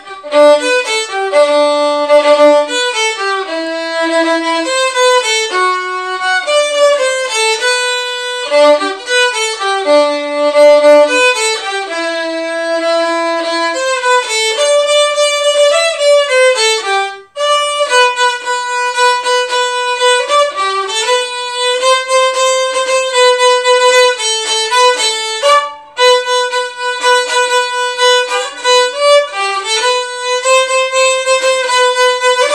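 Unaccompanied solo violin playing a Christmas tune, one bowed note at a time, with a short break about 17 seconds in before the next phrase.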